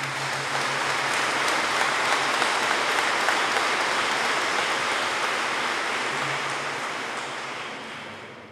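Audience applauding in a large hall, steady for several seconds and then dying away near the end.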